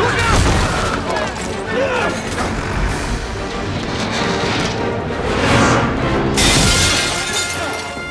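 Film soundtrack of music mixed with crashing, shattering destruction effects as a steel dockside crane is wrecked. A loud rushing noise sets in about six seconds in, as a cloud of dust billows.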